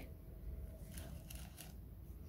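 Faint handling noise: a few soft rustles and ticks about halfway through, over a low steady background rumble.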